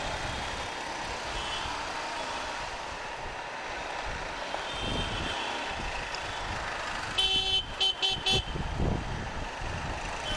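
Steady motorcycle and road noise from riding in slow, dense city traffic. About seven seconds in, a vehicle horn gives four short, quick honks.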